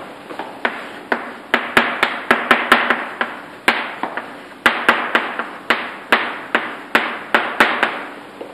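Chalk writing on a blackboard: an irregular run of sharp taps, about three a second, each trailing off in a short scratch as the chalk strikes and drags across the board.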